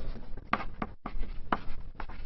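Chalk writing on a blackboard: about three short, sharp chalk strokes and taps against the board.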